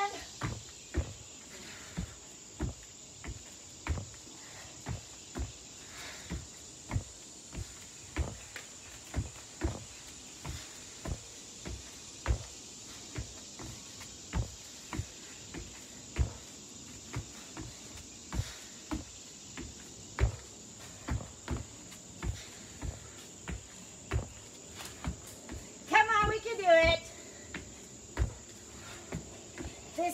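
Repeated thuds of hands and feet landing on a yoga mat over a wooden deck during double burpees, about one to two a second. A steady high insect buzz runs underneath, and a brief voice sounds near the end.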